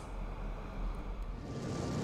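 A low rumble with a whooshing noise that swells up near the end: the opening of an animated logo sting's sound effect.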